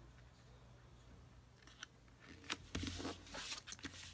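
Cardstock being handled on a craft desk: near-quiet at first with one faint tick, then rustling and scraping of the card against the table from a little past halfway.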